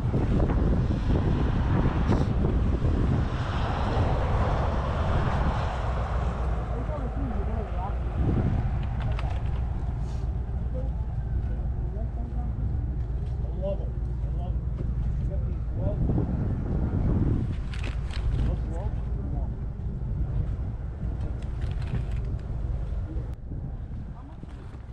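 Wind rumbling on the microphone, with indistinct voices of people nearby.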